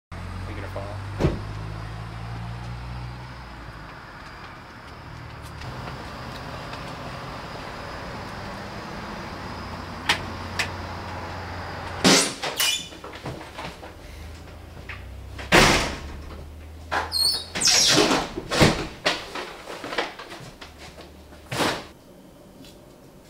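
A car engine running at idle, with a sharp clunk a second in, then a run of loud thumps and bangs from a door in the second half.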